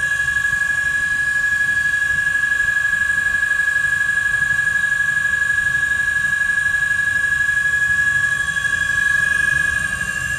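Brushless electric scooter hub motor, 48V/52V and 1000W, spinning its free-hanging 18-inch wheel at full speed with no load. It gives a steady high-pitched whine over a low rumble that holds without change. The display reads about 63.7 km/h, the motor's top speed.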